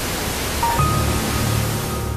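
Television static: a steady, loud hiss of noise. About a second in, a low music drone and a thin high tone come in underneath it.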